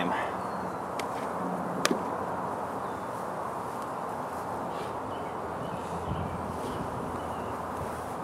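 Steady hum of a honeybee swarm, with two sharp clicks in the first two seconds, the second the louder.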